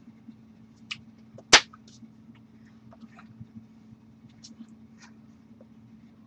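Hands of a person signing: one loud sharp clap or slap about a second and a half in, a smaller one just before, and soft brushing and mouth noises from the signing, over a steady low hum.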